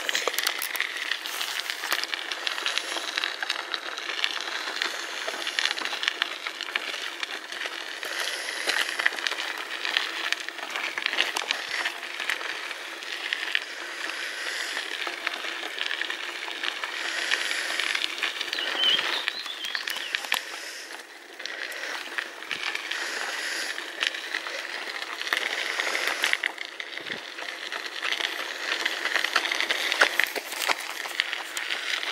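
Bicycle ridden over a loose gravel track: a steady, dense crackle of tyres on the stones and the bike rattling, easing off briefly a little past two-thirds of the way through.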